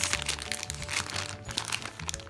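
Plastic bag of craft pearls crinkling and crackling as it is picked up and handled, over soft background music.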